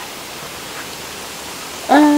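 A steady, even hiss with no distinct events. A woman's voice comes in right at the end.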